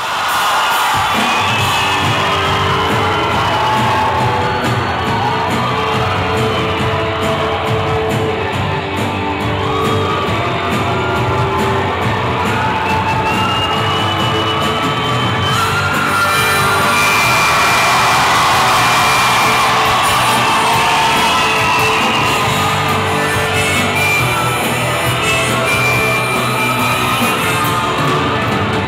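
A live rock band plays, with electric bass and drums, at a steady loud level, while the crowd shouts and cheers over the music.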